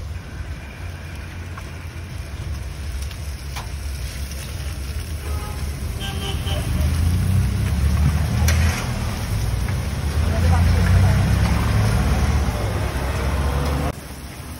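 Halka tatlısı batter sizzling as it is piped in a spiral into a wide pan of hot frying oil, the sizzle building and growing louder from about six seconds in. Under it runs a steady low rumble, the loudest sound.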